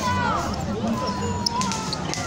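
High-pitched shouts and calls from players on a futsal court, one drawn-out call held for about half a second, with a single sharp knock of the ball just before halfway through. A steady low hum runs underneath.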